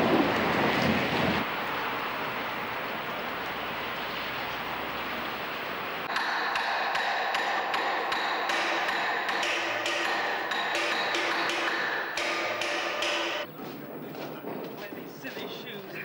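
Rain falling steadily for the first few seconds. About six seconds in comes a quick run of ringing metallic strikes, about three a second, that stops suddenly about two seconds before the end.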